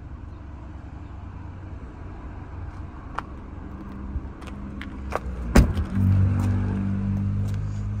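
Boot lid of a BMW 320i saloon being shut, with a few light clicks and then a single loud thud about five and a half seconds in. A steady low hum follows the thud.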